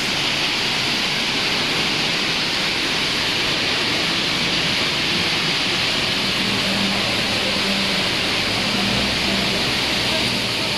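Steady, loud hiss of factory machinery filling a large processing hall. A low machine hum joins about six and a half seconds in.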